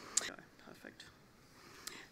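A pause in speech: quiet room tone, with a short breathy hiss just after the start and a small click near the end.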